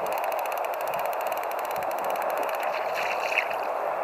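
Steady wash of sea water around a fishing kayak on a gentle swell, with a faint, fast, regular ticking that stops about two-thirds of the way through.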